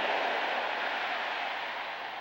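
A steady hiss, with no pitch or rhythm, that fades slowly.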